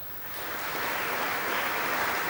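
Audience applauding in a large hall, swelling over the first half second and then holding steady.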